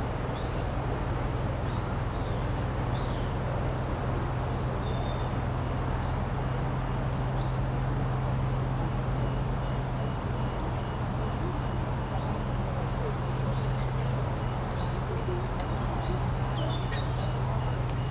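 Boat engine running with a steady low hum while small birds chirp now and then above it.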